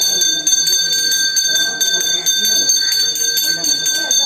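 A temple bell rung rapidly and continuously during worship, its clear ringing tones renewed by several strikes a second, with voices underneath.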